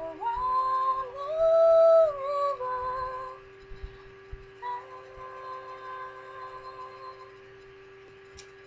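A woman singing wordless held notes: the first glides up into a long, high note that is the loudest part, ending about three and a half seconds in, followed by a softer held note that fades out about seven seconds in.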